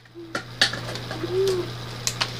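Plastic packaging and containers handled, giving a few sharp clicks, with two brief low arched hum-like tones, the longer one about one and a half seconds in.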